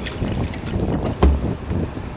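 Wind buffeting the microphone of a handlebar camera while riding a bike on a sandy track, with one low thump a little over a second in.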